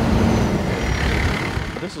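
Fire engine driving past at close range: the low rumble of its diesel engine and tyre noise, loudest as it draws level and easing off as it moves on, with a faint high whine in the first second.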